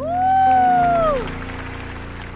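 A singer holds a long final note over the backing music, sliding down as it ends about a second in. Audience applause follows while the music plays on.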